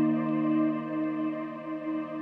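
Ambient background music: held, sustained chords with no beat, slowly fading out.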